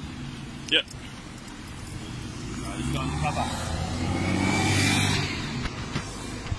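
A car driving past: engine and tyre noise swells over a couple of seconds, peaks about five seconds in, then fades quickly.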